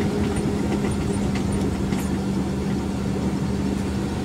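A vehicle's engine running at a steady, even pitch while driving along a street, with road and wind noise underneath.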